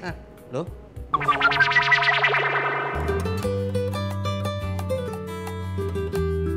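A short exclamation, then about a second in a sweeping musical transition effect, followed from about three seconds by background music with a steady bass and guitar.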